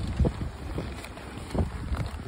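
Wind buffeting the microphone as a steady low rumble, with a couple of short low thumps, one just after the start and one past the middle.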